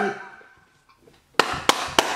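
Rap music fades out, followed by about a second of near quiet. Then, about a second and a half in, a man bursts into breathy laughter with sharp smacks about three a second.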